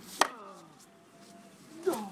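A sharp, sudden crack-like sound about a quarter second in, then near the end a man's short groan falling in pitch.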